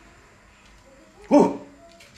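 A dog gives a single short bark a little past halfway, otherwise quiet room tone.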